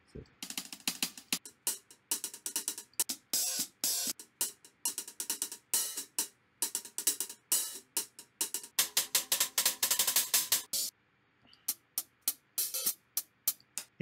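Hi-hat loop samples auditioned one after another in a music production program: quick, crisp hi-hat patterns play in short runs, each cut off as the next one starts, with a brief pause about eleven seconds in.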